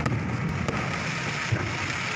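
Fireworks going off with sharp pops and crackles over a steady hubbub of crowd voices, with a duller bang about one and a half seconds in.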